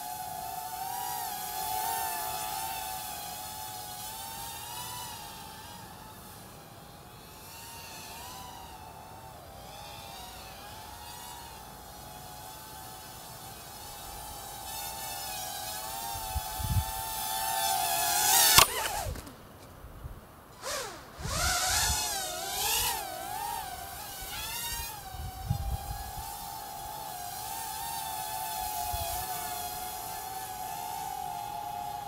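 Four coreless brushed motors and propellers of a 105 mm micro FPV quadcopter (Chaoli CL-820, 8.5×20 mm) whining in flight, the pitch wavering up and down with throttle. About two-thirds through the whine climbs sharply to its loudest, drops away for about two seconds, then comes back.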